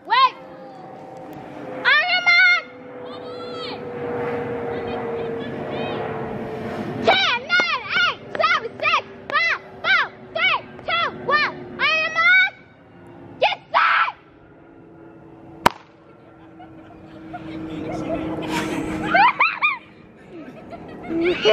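High-pitched voices shouting and cheering, with a rapid run of about a dozen short calls, roughly two a second, in the middle. A steady hum underneath slowly drops in pitch, and there is one sharp click late on.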